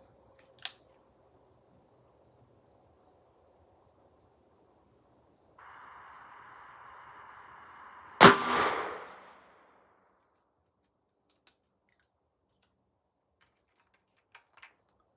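A single .38 Special shot from a Taurus Tracker revolver with a six-and-a-half-inch barrel, about eight seconds in: one sharp report with a short ringing tail. A faint click comes near the start.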